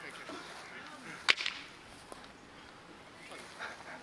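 A single short, sharp snap about a second in, standing out over faint voices.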